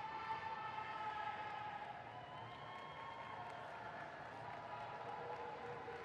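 Marching band's wind section holding a long sustained chord, entering just as it begins and slowly shifting to lower notes while it sustains.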